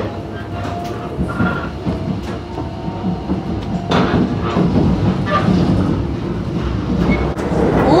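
Thunderbird limited express electric train running at speed, heard from inside the passenger cabin: a steady rumble of wheels on the rails with faint whining tones and a couple of knocks. A voice begins right at the end.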